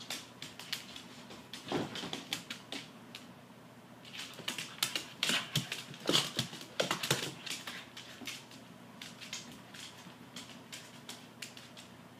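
A dog's claws clicking on a hardwood floor as it spins round chasing its tail, in quick irregular clusters that are busiest in the middle and thin out near the end.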